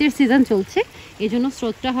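A person speaking steadily, with a faint, steady sound of a small stream running over stones between the words.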